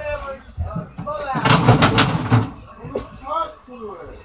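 A loud burst of rapid knocks and clatter lasting about a second, starting about a second and a half in, with indistinct voices around it.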